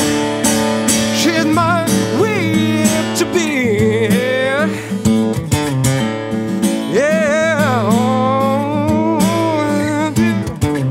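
Music: a man singing with long held, wavering notes over a strummed LAG acoustic guitar.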